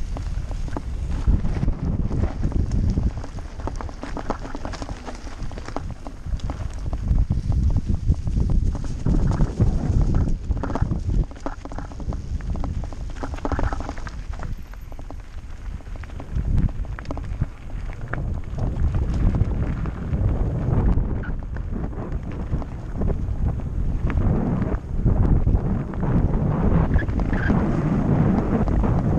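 Mountain bike riding over a rough dirt and gravel trail: a continuous low rumble packed with quick knocks and rattles from the bike on the uneven ground, with wind buffeting the microphone.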